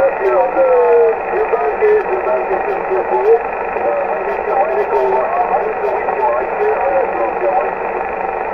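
A distant station's voice is received over shortwave radio and comes through the transceiver's speaker weak and unintelligible, buried in steady band hiss. It is squeezed into a narrow, telephone-like band typical of a single-sideband signal. The signal is barely moving the S-meter, a 'five by one' copy in 'not good condition'.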